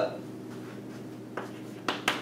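Chalk striking and writing on a chalkboard: two short, sharp chalk strokes about a second and a half in, after a stretch of quiet room tone.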